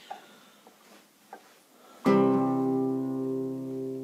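Acoustic guitar: a single chord strummed about halfway through, left to ring and slowly fade. Before it, only a few faint clicks.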